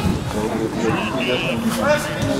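Voices calling out and chattering on an outdoor football pitch, with a brief high tone just over a second in.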